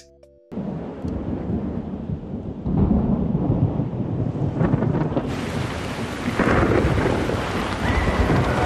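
Thunderstorm with heavy rain: low rumbling thunder under a steady wash of pouring rain. It comes in after a brief hush and swells louder and brighter through the seconds.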